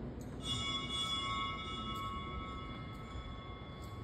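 An altar bell struck once about half a second in at the elevation during the consecration of a Catholic Mass, ringing with several clear tones that slowly fade.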